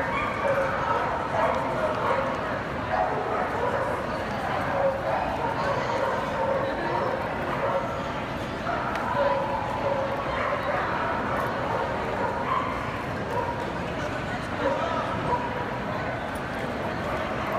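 Dogs barking and yipping here and there over a steady murmur of indistinct crowd chatter in a large indoor show hall.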